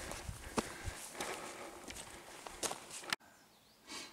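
Footsteps on a loose, stony hiking path: a run of uneven steps on gravel and rock that stops abruptly about three seconds in.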